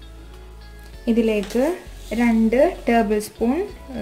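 A person's voice speaking from about a second in, over quiet steady background music; the first second holds only the music.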